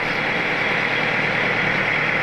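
Fishing launch's inboard engine running steadily underway, a constant low hum under the rush of water along the hull.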